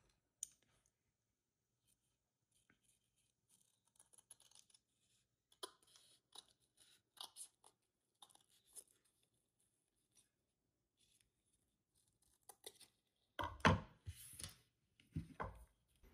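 Faint, scattered rustles and small clicks of ribbon, needle and thread being handled while hand sewing, with a few louder bumps and rubs near the end.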